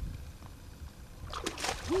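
Hooked largemouth bass splashing at the water's surface during the fight, with a burst of splashing about one and a half seconds in, over a steady low rumble.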